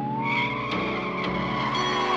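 Police car siren wailing, its pitch sliding down, back up and down again, with tyres screeching from about a quarter second in, over steady film-score music.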